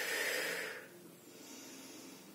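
A woman's audible exhale, a soft breathy hiss lasting about a second and fading out, breathed out during a slow mat exercise.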